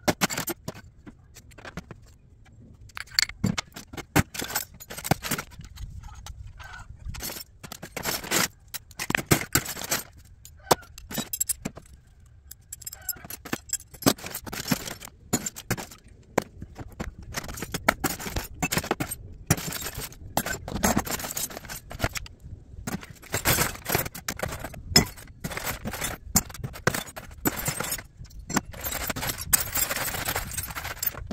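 Small pieces of scrap metal clinking and clattering irregularly as they are handled and dropped into plastic tubs, with some scraping.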